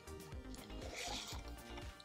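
Soft background music, with a brief rustle of items being handled in a bag about a second in.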